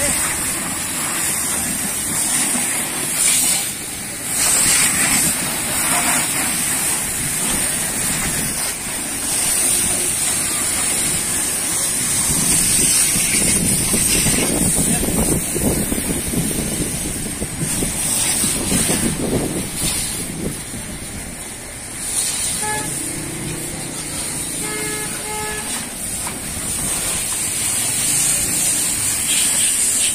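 Pressure-washer water jet hissing steadily against a car's bodywork, with street traffic rumbling around it. A vehicle horn beeps several short times about two-thirds of the way through.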